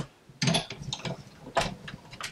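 Big Shot die-cut machine being hand-cranked, its rollers drawing a stack of cutting plates, a thin metal die and paper through: a run of uneven mechanical clicks and creaks starting about half a second in.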